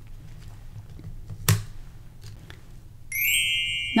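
Quiet handling with a single light click about a second and a half in, then near the end a sparkly chime sound effect starts, a steady ringing shimmer.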